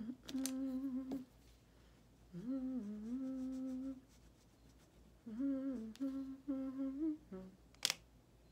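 A woman humming a simple tune with her lips closed: a long held note, then a note that rises and holds, then a run of shorter notes. A sharp click comes near the end.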